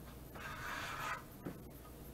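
A brief scrape as the meat slicer is handled and set up by hand, followed about a second later by a single light click.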